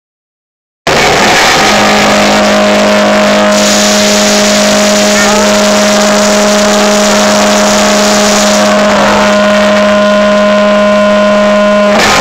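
Loud, distorted sustained drone from a concert PA, starting about a second in: two steady low tones held for about ten seconds over a harsh, noisy wash, with the phone recording overloaded.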